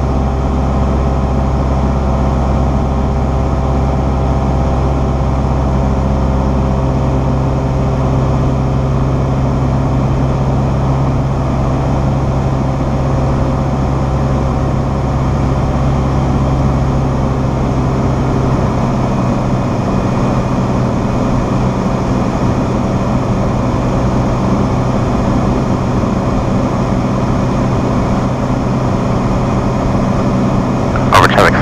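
Cessna 172SP's four-cylinder Lycoming engine and propeller droning steadily in flight, heard inside the cabin as a loud, even hum made of several steady tones. About nineteen seconds in, the deepest part of the hum drops away.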